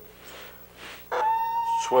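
A steady pitched tone starts about a second in and holds at one pitch for over a second, running on under a man's voice near the end.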